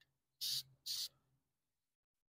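Two short hissing spritzes from an aerosol can of textured coating, about half a second apart.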